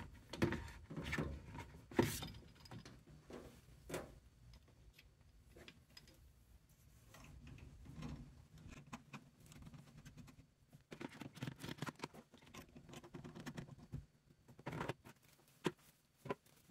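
Faint handling sounds of a washing machine's water supply hose being connected: scattered small clicks and rustling as the threaded coupling is turned by hand onto the inlet valve, busier in the last few seconds.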